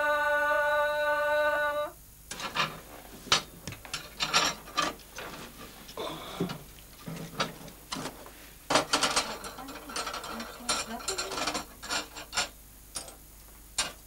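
A held sung note that cuts off about two seconds in, followed by irregular metallic clinks, knocks and scraping from a small sheet-metal wood stove as its round hotplate lid is lifted and the firebox is worked by hand.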